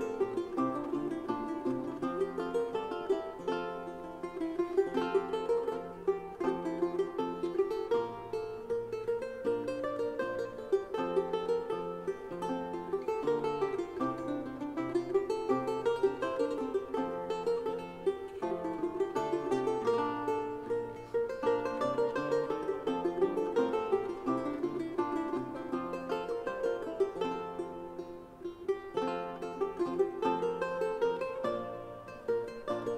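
A Renaissance ensemble of lutes and viols playing an instrumental piece: plucked lute notes over a smoothly rising and falling melody and a repeating bass line.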